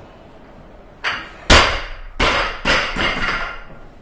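A 50 kg Olympic barbell with Eleiko bumper plates is dropped from overhead onto rubber gym flooring. There is a knock about a second in, then the loud landing, then several smaller bounces and rattles that die away.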